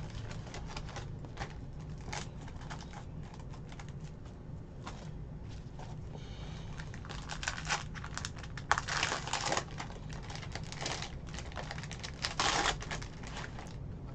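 Trading cards and foil pack wrappers being handled: a run of small crinkles and clicks, thickest in the second half.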